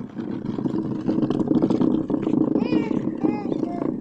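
Plastic chair legs scraping and grinding across a rough concrete floor as a toddler pushes the chair along, a steady rough scrape with short high voice calls over it about two thirds of the way in.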